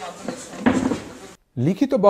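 Room sound of a press conference in a hall: faint voices, with a sudden louder clattering burst about two-thirds of a second in lasting under a second, then a man's voice-over begins near the end.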